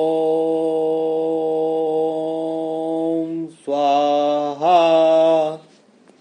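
A man's voice chanting the mantra "Om": one long held note at a steady pitch, then two shorter ones.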